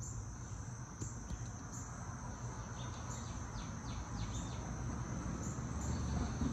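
Steady high-pitched insect chorus, with a run of short chirps about three to four and a half seconds in.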